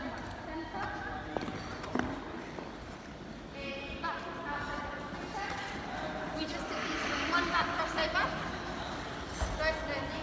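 Indistinct voices talking in the background, with two short sharp knocks about one and two seconds in.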